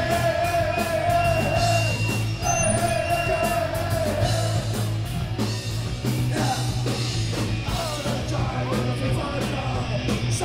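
Live punk rock band playing: a shouted, sung lead vocal with long held notes over distorted electric guitar, bass guitar and drums.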